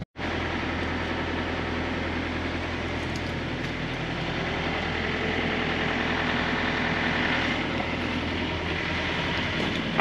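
A vehicle engine idling, a steady low hum with no change in pitch, starting abruptly after a split-second gap.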